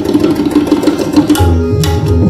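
Tabla in a teentaal duet, playing a fast, dense run of rapid strokes. About a second and a half in, the harmonium's repeating lahara melody comes back in with held notes under clearer, more spaced tabla strokes.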